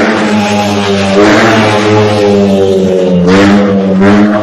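Loud motor vehicle engine running close by with a steady drone, its pitch dipping slightly about three seconds in.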